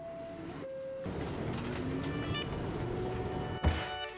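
New York City subway: a descending two-note door chime, then a train pulling out with a steady rumble and a motor whine that rises slowly in pitch. Near the end the sound cuts off abruptly to music.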